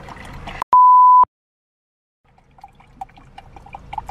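A loud, steady, high beep lasting about half a second, with a click as it starts and stops: an edited-in censor bleep. It cuts to dead silence for about a second, then faint clicks and rustles come back.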